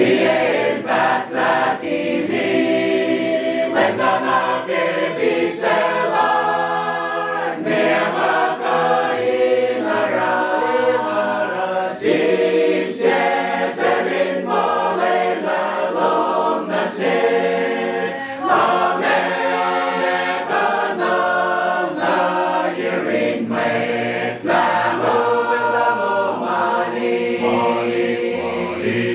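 Gospel choir singing a hymn in several-part harmony, unaccompanied.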